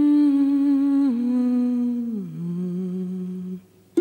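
A voice humming a slow phrase of three held notes, each a step lower than the last, breaking off just before the end.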